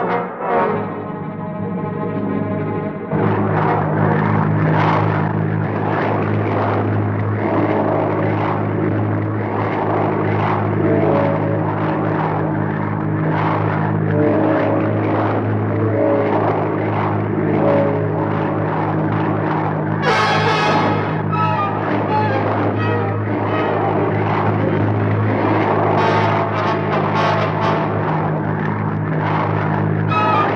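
Old film soundtrack: a brass-heavy orchestral score, joined about three seconds in by a steady engine drone that runs on beneath the music. A brief louder swell comes about twenty seconds in.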